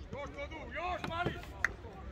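High-pitched children's voices calling out during a youth football match, with a single sharp knock about one and a half seconds in.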